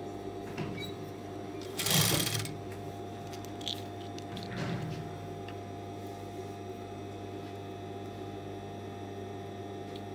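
Industrial sewing machine with its motor humming steadily while fabric is fed and positioned under the needle. A brief louder burst comes about two seconds in and a smaller one near the middle.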